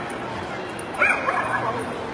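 A dog barks about halfway through: one high bark that falls in pitch, then a couple of shorter ones after it.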